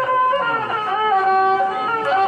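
A man singing a Shan song through a microphone, holding long notes that step in pitch, over musical accompaniment.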